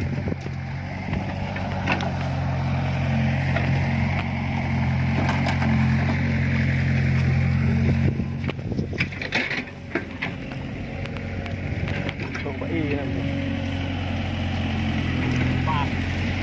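Steady low buzzing drone from a backpack electric fish-shocker working in a flooded rice paddy, dipping briefly about two-thirds of the way through, with a few light clicks over it.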